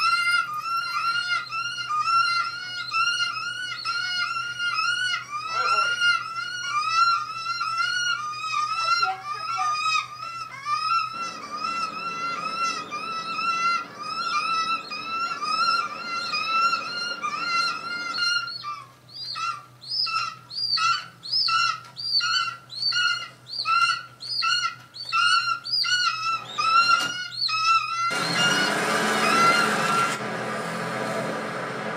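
A looped, synthetic-sounding bird screech sound effect from a film soundtrack, heard through a TV speaker. The same pitched cry repeats about twice a second, becoming choppier partway through, and a burst of rushing noise comes in near the end.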